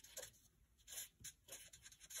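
A felt-tip marker writing on paper: a series of faint, short strokes.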